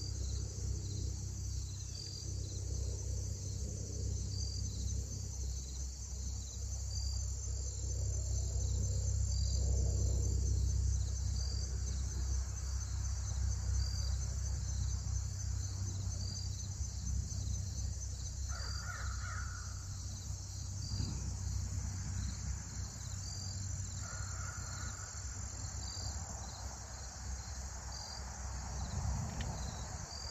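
A steady outdoor insect chorus with an even, repeating pulse, over a low steady rumble. A bird gives a few short cawing calls in the second half, about two thirds of the way through, again a little later, and at the very end.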